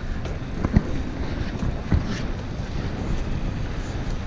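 Wind rushing over the microphone of a camera on a moving bicycle, with steady low rumble and a few faint knocks.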